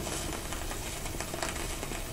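Surface noise of a 1924 Victor 78 rpm shellac record as the stylus runs through the lead-in groove: a steady hiss with faint crackles and ticks.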